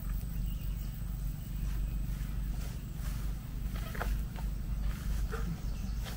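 Low, fluctuating outdoor rumble on a handheld camera's microphone as it is carried along a vineyard row, with a few faint short sounds about four and five seconds in.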